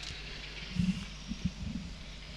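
Quiet background in a pause of the race call: a steady low hum with a few faint, indistinct low sounds.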